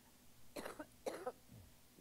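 A person coughing twice, briefly and quietly, about half a second and a second in.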